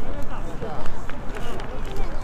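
Several high-pitched young voices talking and calling out over one another, over a low outdoor rumble.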